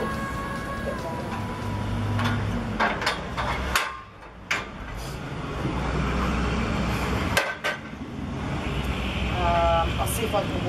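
Scattered knocks and clanks, about seven in all, from the metal scaffolding as it is gripped and climbed, over a low steady rumble.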